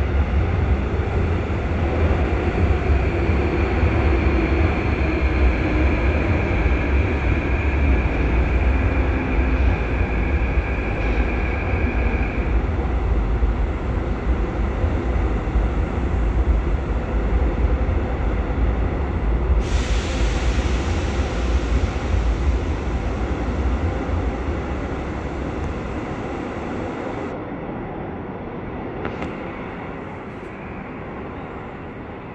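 Seoul Metro Line 3 train passing through an underground station without stopping, heard from the platform behind screen doors: a heavy, steady rumble of wheels on track. A steady high tone rides on it for the first twelve seconds, and the rumble fades over the last few seconds as the train leaves.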